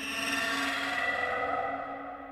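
Ambient background music: a sustained drone of several steady tones that swells and then slowly fades.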